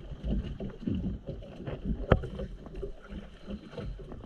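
Water sloshing against a small boat's hull, with one sharp knock about two seconds in.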